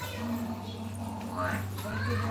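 A person's voice and a short call that rises and falls in pitch about one and a half seconds in, over a steady low hum.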